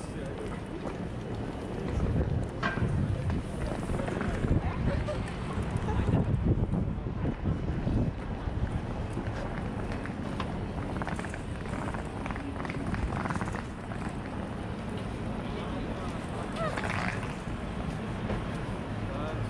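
Busy city street ambience: a steady low traffic rumble, snatches of passers-by talking, and wind buffeting the microphone.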